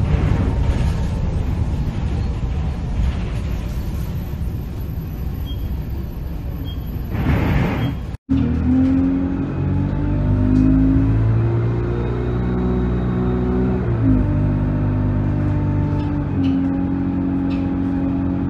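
Bus running along a road, a steady rush of engine and tyre noise, filmed from the front behind a rain-spattered windscreen. About 8 s in the sound cuts off suddenly, and low held notes that step from pitch to pitch take over, background music over the bus running.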